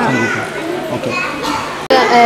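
Children talking and chattering, cut off abruptly near the end.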